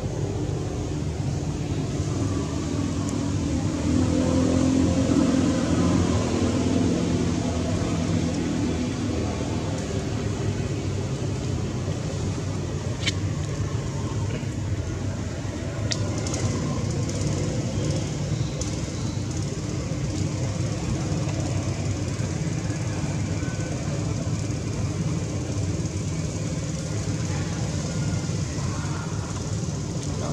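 Steady low rumble of vehicle engines and traffic, with faint distant voices and a few light clicks.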